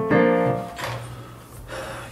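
A piano chord played on a digital keyboard, struck just after the start and fading within about a second, with a low note lingering faintly after it: a chord being tried out while working out a harmony.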